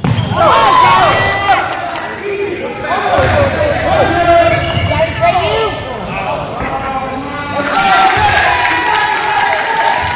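Live youth basketball game on a hardwood gym floor: sneakers squeaking as players run and cut, the ball bouncing, and spectators' voices calling out in the background, all overlapping continuously.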